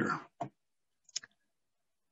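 Two short clicks during a pause in speech, one about half a second in and a sharper, higher one just past a second in, with dead silence around them.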